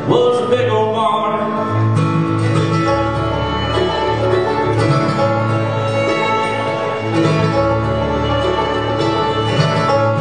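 Bluegrass band playing a passage between verses: picked acoustic guitar and strings over walking bass notes.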